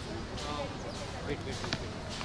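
Outdoor street background: a steady noise bed with faint voices, and two sharp knocks a little past the middle.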